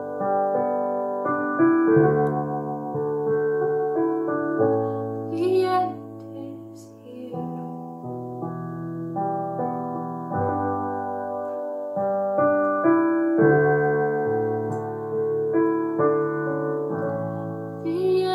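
Solo piano playing slow, sustained chords that change every second or two, an instrumental passage between sung lines.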